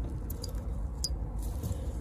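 Faint handling noise as gloved fingers work a crimped wire terminal into a plastic multi-pin connector block, with a few small ticks from the terminal and plastic.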